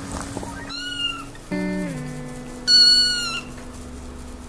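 A kitten mewing twice, short high-pitched calls about two seconds apart, the second louder, over background music.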